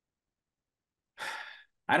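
Dead silence for about a second, then a man's short audible breath, a sigh-like exhale of about half a second, just before he starts to speak.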